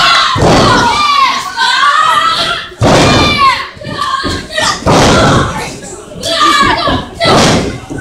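Several heavy thuds of wrestlers' bodies hitting the ring mat, amid high-pitched shouting from fans in the crowd.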